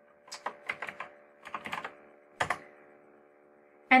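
Computer keyboard keys clicking as a word is typed, in two quick runs of keystrokes, then one louder click about two and a half seconds in.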